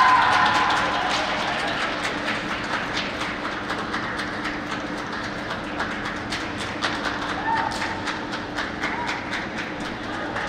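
Scattered hand clapping from a small crowd, irregular sharp claps over a steady low hum.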